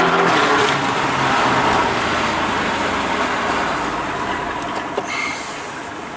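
Car engine heard from inside the cabin, loud under hard acceleration at first, then easing off so that the engine and road noise gradually die down over the next few seconds.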